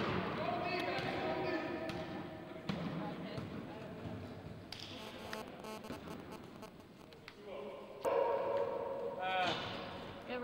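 Basketball bouncing with scattered thuds on a wooden gym floor, mixed with men's voices calling out in the gym, loudest near the end.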